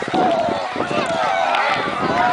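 Several high children's voices yelling and shouting at once, with long held cries, over general crowd voices.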